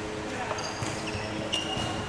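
Sharp badminton racket strikes on a shuttlecock, two of them a little under a second apart, with short high shoe squeaks on the wooden court floor.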